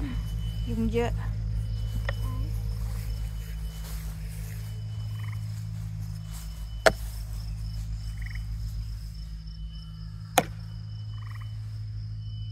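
Outdoor chorus of insects and frogs: a steady high insect buzz with short repeated chirps, a few short pulsed frog calls, and a low steady hum underneath. Two sharp knocks stand out, about seven and ten seconds in.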